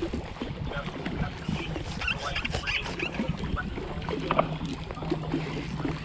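Water lapping against a kayak hull, with clicks and rattles from a spinning reel being cranked while a hooked fish is played. A faint steady low hum comes in about halfway through.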